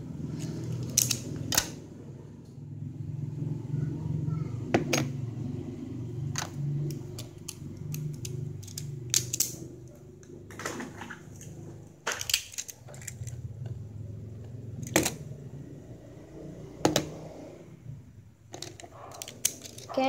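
Sharp plastic clicks and taps, a dozen or so scattered irregularly, as Beyblade spinning tops are handled close to the microphone, over a low steady hum.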